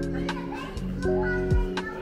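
Background music: held synth chords over a beat with deep, falling kick-drum thuds.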